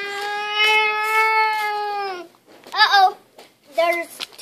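A young boy's voice holding one long, steady note, a make-believe plane engine sound, which stops a little over two seconds in. A couple of short vocal sounds that swoop up and down in pitch follow near the end.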